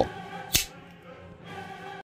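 A single sharp click about half a second in, as the Midgards-Messer Viking folding knife's blade is flicked open and snaps into place, over faint background music with sustained choral tones.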